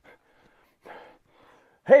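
Mostly near silence with one faint, short noise about a second in, then a man's voice starting the word "Hey" right at the end.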